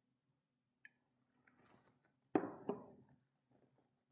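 Quiet kitchen handling: a faint pour of water into a measuring cup, then two sharp knocks a little past halfway as the glass jug and kitchenware are set down on the table.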